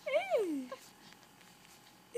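A baby's coo: one short, high-pitched vocal sound that rises briefly and then glides down in pitch, lasting under a second.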